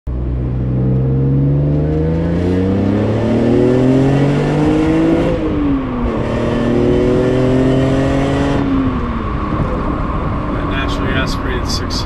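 Car engine accelerating hard, its pitch climbing through one gear, dropping at a quick upshift a little past five seconds in, climbing again, then falling away as the throttle is lifted.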